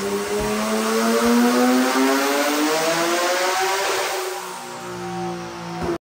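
BMW G80 M3's twin-turbo inline-six pulling on a chassis dyno, its note rising steadily in pitch for about four seconds. The throttle then closes and the engine drops to a lower, quieter note as it winds down.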